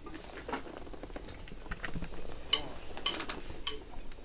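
Quiet studio room with faint shuffling, then sharp clicks about 0.6 s apart in the last second and a half: a count-in, the band entering on the next beat.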